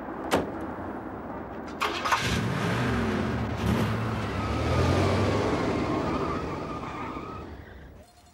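Two sharp thuds, then a car engine runs as the car pulls away. The sound swells to a peak about five seconds in and then fades out.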